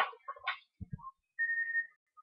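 A person whistling one short, steady, high note, with a couple of soft knocks just before it.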